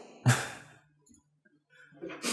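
A person's short breathy laugh: a single exhaled huff about a quarter second in.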